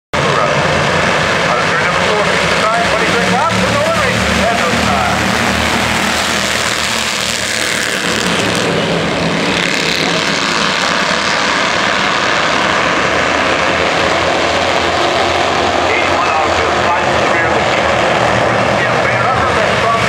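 A field of Bandolero race cars running on an oval track, their small engines making a steady, loud drone, with voices mixed in.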